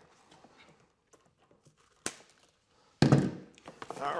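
Cable ties being snipped off a coiled charging cable with cutters: a few faint clicks and one sharp snip about two seconds in, then a loud thunk about three seconds in.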